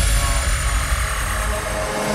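Electronic dance music breakdown with the beat dropped out: a sustained noise sweep with a slowly falling high whistle over a low rumble.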